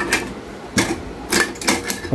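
About five sharp clicks and knocks as a rice cooker is handled, its cook switch lever pressed and its metal body and heating plate touched.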